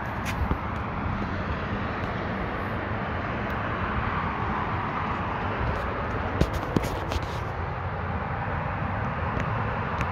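Steady outdoor background noise, a low rumble with a hiss over it, broken by a few faint clicks a little past the middle.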